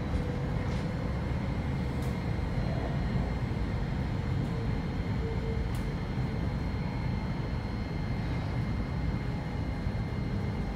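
Interior running noise of a Thameslink Class 700 electric train moving along the line: a steady low rumble with a faint steady high whine and a few light ticks.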